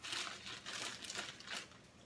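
Plastic bag of marshmallows crinkling as a hand rummages in it and pulls one out: a string of irregular crackles that dies away near the end.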